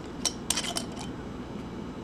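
Aluminium screw cap of a wine bottle being twisted and worked off by hand, giving a few light metallic clicks and scrapes.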